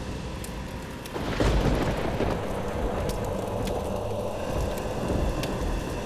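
Thunderstorm sound effect: low thunder rumbling over a steady rain-like hiss with scattered patter. The rumble swells about a second and a half in.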